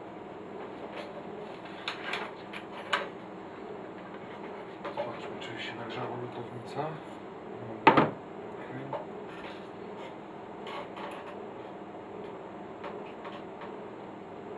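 Light clicks and knocks of tools being handled on a workbench as a soldering iron is picked up from its station, with one louder knock about eight seconds in, over a steady low hum.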